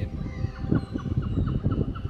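Low, uneven rumble of wind and handling on a handheld camera's microphone, with faint bird calls from waterfowl by the lake.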